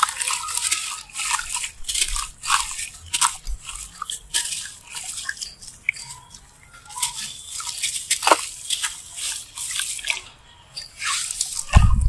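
A dry sand-cement block crumbling in the hands: gritty crunching and crackling in irregular bursts, with crumbs and grains falling into water. A dull thump near the end.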